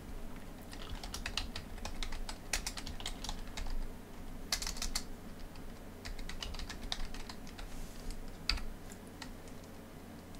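Computer keyboard typing: irregular keystrokes spelling out words, with a louder cluster of keys about halfway through, over a faint steady low hum.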